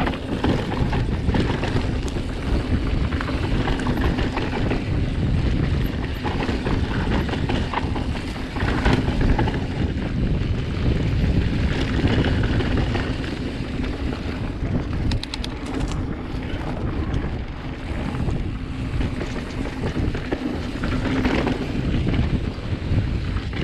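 Wind buffeting the microphone of a camera on a Giant Reign mountain bike descending a dirt singletrack, with the tyres rolling over dirt and the bike rattling over bumps. A short run of fast ticks comes about fifteen seconds in.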